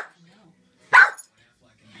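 A small dog barking: one sharp, loud bark about a second in, just after the tail of another at the very start.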